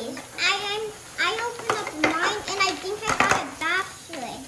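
Children's voices talking, with a short clatter of small plastic toy pieces being handled about three seconds in.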